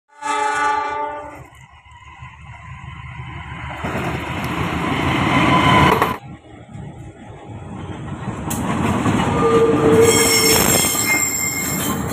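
Diesel locomotive horn blast lasting about a second, then an Indonesian diesel locomotive running towards the microphone and growing louder until a cut about six seconds in. A second locomotive approach builds up after it, with a high wheel squeal over the points in the last two seconds.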